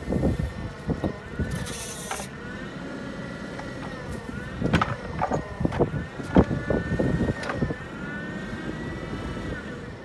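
Jungheinrich TFG435 LPG forklift running, its engine and hydraulic whine sagging and recovering several times. There is a short hiss just before two seconds in, and a cluster of sharp clunks and knocks in the middle.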